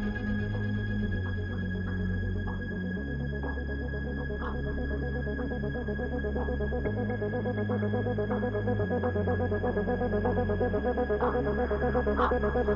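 Electronic dance music from a live DJ set, in a breakdown without drum hits: held bass notes change every two seconds or so under steady high synth tones.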